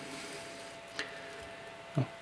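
Faint handling noise from a partly disassembled camera lens being turned in gloved hands: a soft, even rustling hiss with one small click about a second in.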